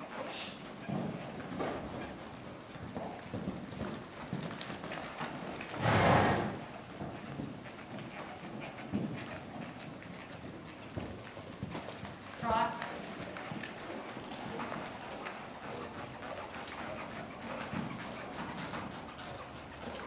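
A horse's hoofbeats on the dirt footing of an arena as it trots and canters around its handler, light irregular thuds. There is one loud, noisy burst about six seconds in.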